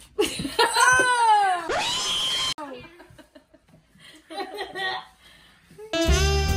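A child's loud, drawn-out vocal reaction to a disgusting mouthful, the pitch sliding up and down, cut off suddenly about two and a half seconds in. Quieter laughter follows near the end.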